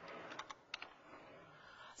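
A quick run of four or five faint key clicks about half a second in, from pressing keys to advance the lecture slides.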